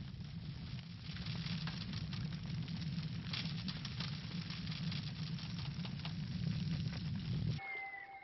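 Strong wind: a steady rush of noise with a deep rumble and scattered crackle. It cuts off suddenly near the end, where soft music with long held tones comes in.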